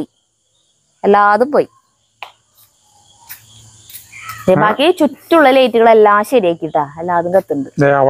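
A woman talking, with crickets chirring steadily and faintly behind her voice.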